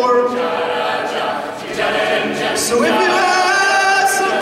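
A mixed-voice a cappella group singing held chords, with the harmony shifting to a new chord about three seconds in.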